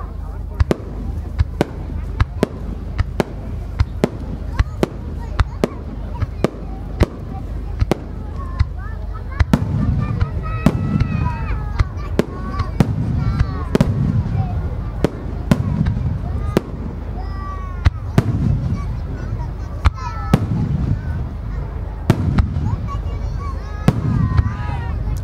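Aerial firework shells bursting in quick succession, a sharp report every half second or so, with heavier low booms from about ten seconds in.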